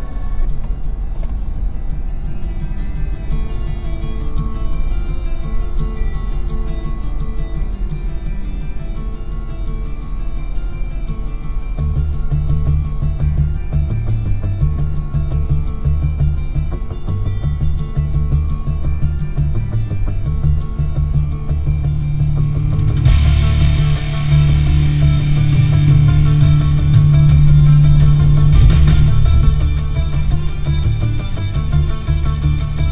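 A rock track with guitar playing through the 2006 Toyota 4Runner's six-speaker factory audio system, heard inside the moving cabin. It sits at the system's default settings, where the bass is way too high and the treble a little low. The low end fills in about twelve seconds in, and the music gets louder and brighter a little past twenty seconds.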